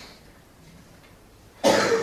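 A man coughs once, loudly, about a second and a half in, after a stretch of low room tone.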